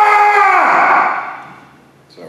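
A loud, long voiced "ahh" on the out-breath, held steady and then fading away about a second in: a sounded exhale, letting tension go out with the breath.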